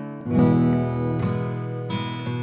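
Background music: an acoustic guitar strumming chords, without singing, with a new chord coming in shortly after the start.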